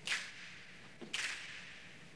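Two sharp cracks about a second apart, each dying away over about half a second in a large, echoing hall.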